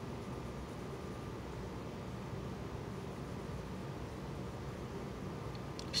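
Steady low hiss and hum of background room noise, even throughout with no distinct sounds standing out.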